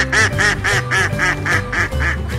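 Domestic ducks quacking in a quick, even series, about four quacks a second, roughly eight in a row.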